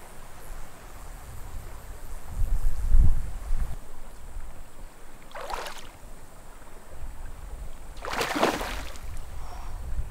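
A hooked brown trout splashing at the water's surface twice, briefly about five and a half seconds in and longer about eight seconds in, over a steady low rumble of moving water.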